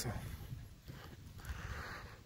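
Faint footsteps of a person walking on an asphalt path, soft low thuds at a walking pace over light outdoor background noise.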